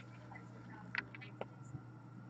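Faint handling of trading cards, with a few light clicks about a second in and again shortly after as a card is set down on a stack. Otherwise quiet room tone.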